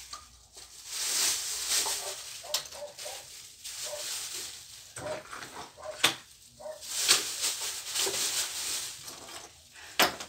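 Rustling of clothes and small objects being handled while tidying a dresser, in two longer spells, with a few sharp clicks and knocks of things being picked up or set down.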